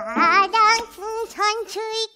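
A high, childlike character voice singing a short playful phrase of several quick, sliding notes, the last one held briefly before it stops.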